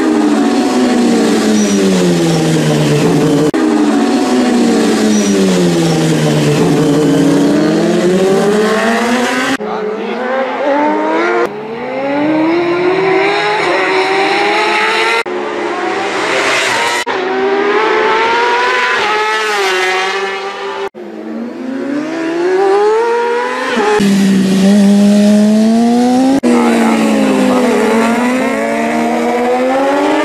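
Racing motorcycles at speed, engines rising in pitch in steps as they change up through the gears and falling as they pass and brake. It comes as a series of short clips with abrupt cuts between them.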